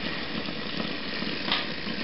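Steady hum and hiss of a Bedini SSG multi-coil battery charger running, its magnet rotor spinning past the pulsed coils. A brief soft sound comes about one and a half seconds in.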